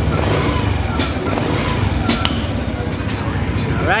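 Yamaha Aerox scooter's single-cylinder engine idling steadily after a top-end rebuild with a new camshaft, piston and rings, running very quietly with the helicopter-like noise gone.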